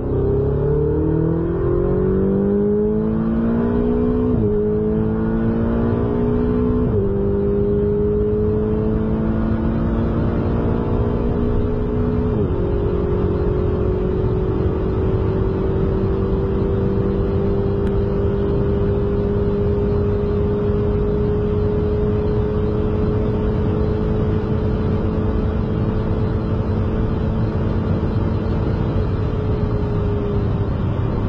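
A car engine accelerating hard up through the gears. The pitch climbs and drops sharply at three upshifts in the first dozen seconds, then holds at high, steady revs.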